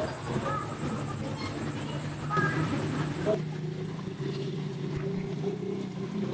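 A machine running with a steady low hum, growing clearer and more even about halfway through; faint voices sound in the first half.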